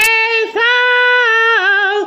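A woman singing unaccompanied, holding long vowel notes with a brief break about half a second in, then dropping to a lower note with a wavering vibrato near the end.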